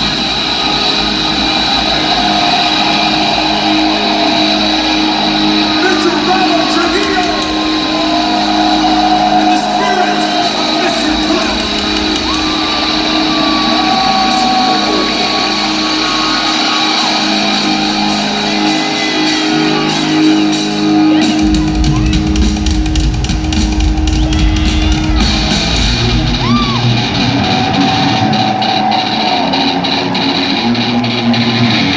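Live electric bass solo, amplified through an arena PA, playing long sustained distorted notes over a shouting, cheering crowd. About 21 seconds in, a heavier, deeper bass part comes in.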